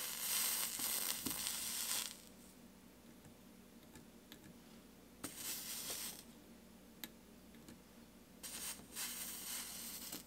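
Flux and solder sizzling under a soldering iron tip as it is worked along the seam of a stained-glass piece, in three bursts of hiss: about two seconds at the start, a short one about five seconds in, and another near the end. A couple of faint clicks fall between them.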